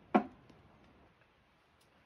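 A tossed Waddies game piece landing with one sharp knock about a moment in, then a faint second tick as it bounces.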